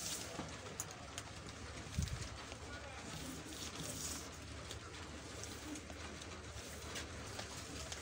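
Faint handling sounds of a cloth tape measure being laid and slid across brown pattern paper, with light clicks and a soft thump about two seconds in.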